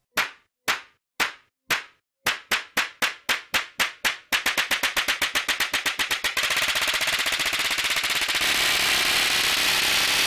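Cartoon slap sound effects as two characters slap each other over and over. The slaps start about two a second, speed up steadily, and run together into one continuous blur of slapping about six seconds in.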